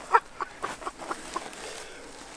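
A man laughing: a run of short "ha" pulses, about four a second, that fade out within the first second and a half.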